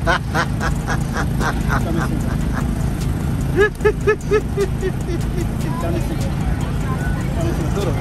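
A man laughing heartily in a quick run of short bursts, about five a second. A couple of seconds later comes a higher-pitched run of about five laughs. A steady low rumble runs underneath.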